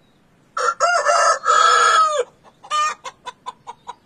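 A rooster crows once, starting about half a second in and ending on a falling note, followed by a quick run of short clucks from the chickens.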